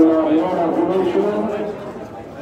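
Speech only: a man's voice talking, as in match commentary.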